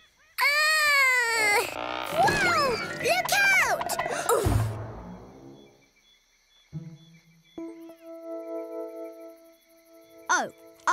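Cartoon soundtrack: a character's wordless, wailing vocalising with sliding pitch for the first few seconds, a soft thud about halfway through, then a quiet, sustained music phrase in the second half.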